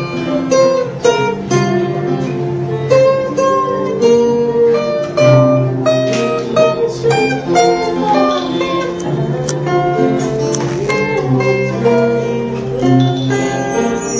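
Several acoustic guitars played together in an ensemble, picked notes and chords ringing over one another.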